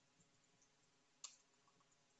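Near silence: room tone, with one faint, sharp click just past a second in and a couple of fainter ticks after it.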